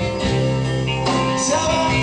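Live band playing amplified music through a PA: electric guitars, bass guitar and drums.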